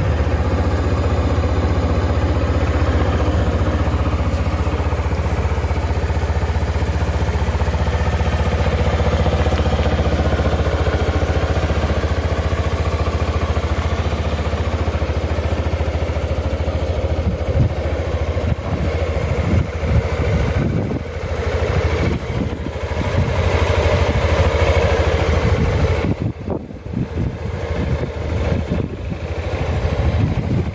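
Suzuki Skywave 250 scooter's single-cylinder four-stroke engine idling steadily. In the second half the sound turns more uneven, with a brief dip in level a few seconds before the end.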